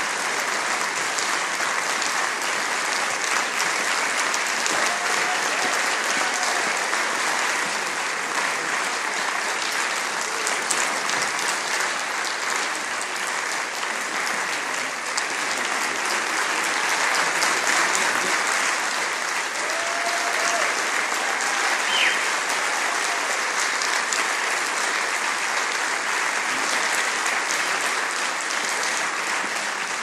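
Audience applauding steadily, sustained clapping throughout, with a few faint whoops.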